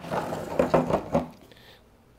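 Large blue plastic screw cap being twisted off the plastic water tank of a Milwaukee M18 Switch Tank sprayer, a rasping scrape of plastic threads with small clicks that lasts about a second and a half. The cap is tight and takes force to turn.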